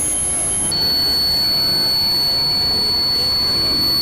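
Experimental industrial synthesizer drone: a dense, noisy wash with steady high-pitched tones over it. Under a second in, one high whistling tone cuts off and a lower steady whistle takes over.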